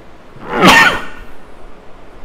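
A man coughs once, a single loud, short burst about half a second in.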